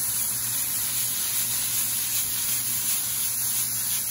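Mushrooms, peppers and peas sizzling in olive oil in a hot sauté pan: a steady hiss of frying and steam, with a low steady hum underneath.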